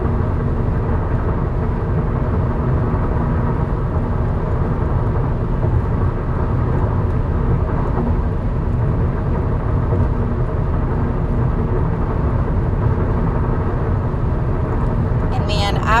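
Steady, fairly loud low-pitched background noise with a faint even hum, unchanging throughout.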